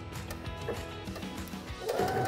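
Background music over a Baby Lock Brilliant sewing machine stitching steadily, running a triple straight stitch.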